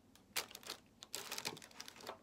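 Disposable aluminium foil tray being set down and handled, its thin metal crinkling and clicking: one sharp clack about a third of a second in, a few lighter clicks, then a run of crackling in the second half.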